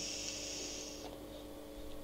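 A mouth-to-lung draw on an Innokin Jem vape with its 1.6-ohm coil fired at 13.5 watts: a steady airy hiss of inhaled air through the tank that stops about a second in.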